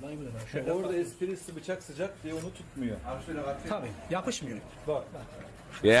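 Speech: a man talking at a moderate level, with no other sound standing out.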